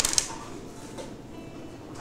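Brief crinkle and rustle of packaging being handled, from the plastic bag and paper disc sleeve, then a faint click about a second in.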